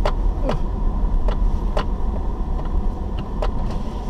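A car driving slowly over a rutted dirt road, heard from inside the cabin: a steady low rumble with scattered sharp clicks and knocks.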